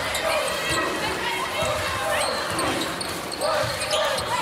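Basketball being dribbled on a hardwood court in a large arena, the bounces set against a steady wash of crowd noise and voices.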